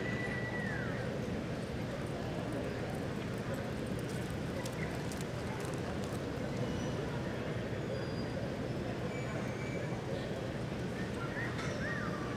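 A horse's hoofbeats loping on arena dirt over a steady room hum. A brief high whistle-like tone sounds at the very start and again near the end.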